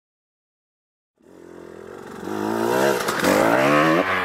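KTM 125 XC-W two-stroke enduro motorcycle revving hard as it is ridden, its pitch rising and falling several times. The engine comes in about a second in and grows louder.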